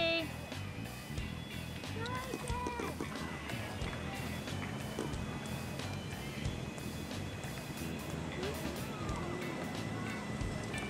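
Faint voices and background music over outdoor ambience, with a few short high-pitched voice sounds about two seconds in and again near the end.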